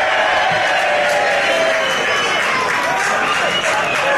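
Football crowd in a stadium shouting and cheering, many voices at once.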